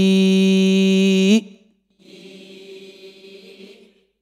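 A man's voice holding one long chanted vowel at a steady pitch, the drawn-out madd (lengthened vowel) of an Arabic word read aloud in Qur'anic reading practice; it cuts off about a second and a half in. A much fainter voice follows for about two seconds.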